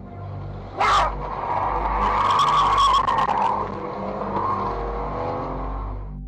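A car accelerating hard and swerving, its tyres squealing with the engine working under load. There is a sudden loud burst about a second in.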